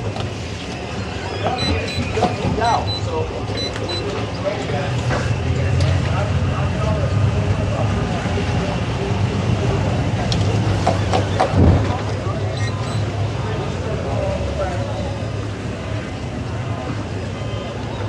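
Towboat engines running steadily at low maneuvering speed while pushing a boat lashed alongside in a hip tow. A single knock comes about eleven and a half seconds in.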